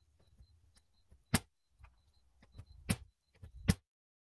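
A pneumatic framing nailer fires three times: about a second in, near three seconds, and just before the end. Each shot drives a ring-shank nail through a fiber-cement siding sheet.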